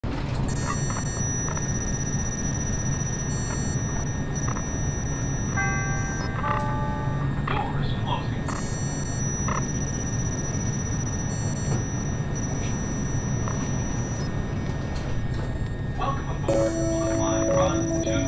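Steady low rumble with a thin high tone switching on and off, and a short descending run of clear electronic tones about six seconds in; music with sustained notes comes in near the end.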